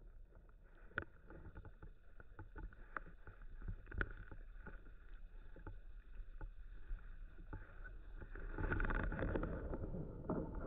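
Muffled underwater sound picked up by a camera submerged in a pond: a low watery rumble with scattered small clicks and knocks, the sharpest about a second in and at four seconds, and a swell of water noise near the end.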